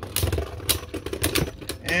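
Two Beyblade Burst spinning tops whirring in a plastic stadium, clacking against each other in a quick series of sharp clicks. One top runs out of spin and stops, ending the round with a spin finish.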